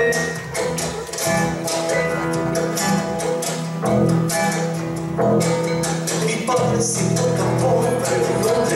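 Live folk band playing an Afro-Peruvian samba landó: strummed and plucked acoustic guitars over upright bass and drum-kit percussion, in a steady rhythm.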